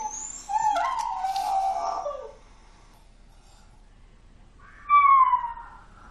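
Dog howling at being left home alone: drawn-out whining cries for the first two seconds, then after a pause one short, loud falling howl near the end.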